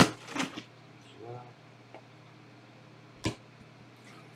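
Trading cards and plastic card holders being handled on a table: a sharp loud click at the start and another about three seconds in, with a couple of brief voice sounds between.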